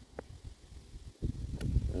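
Low wind rumble on the microphone, with a faint click about a fifth of a second in.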